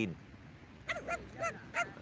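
Bird calls: a quick run of about six short calls, starting about a second in.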